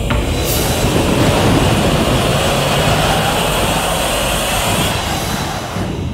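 Loud, steady rushing noise from a film soundtrack, with no clear pitch, dying away near the end.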